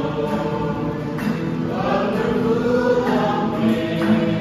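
A group of young men and women singing a song together in chorus, accompanied by an acoustic guitar.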